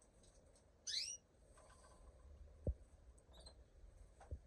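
A small cage finch gives one short, rising chirp about a second in, then a fainter high call later. A single dull knock sounds between them.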